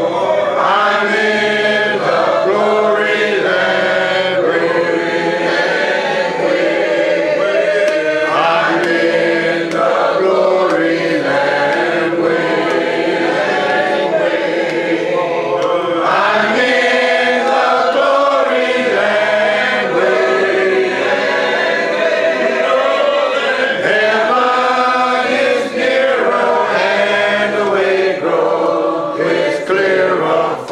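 A congregation singing a hymn together a cappella, many voices in unison and harmony with long held notes.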